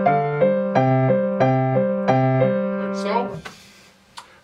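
Grand piano played with both hands, each hand rocking between two notes of a melodic interval at about three notes a second, with the accented down-up rotation of an interval-study technique exercise. The playing stops a little past three seconds in and the notes die away.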